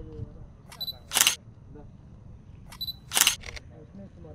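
Sony A7 III camera focusing and firing twice: each time a short high focus-confirmation beep, then the shutter click about a third of a second later. The second time the shutter clicks twice in quick succession.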